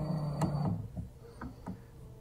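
A short steady hum that stops under a second in, then a few light clicks and knocks as a phone camera is handled and moved into a new position.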